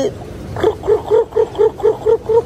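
A person's voice calling pigeons with a rapid run of short, high-pitched syllables, about five a second, starting about half a second in.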